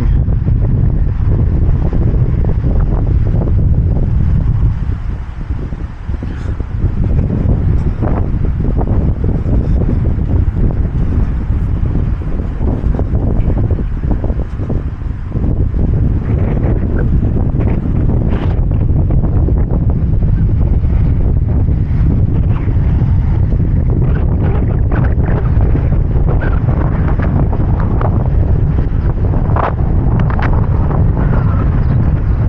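Wind buffeting the microphone: a loud, steady low rumble that eases briefly about five seconds in and again around fifteen seconds.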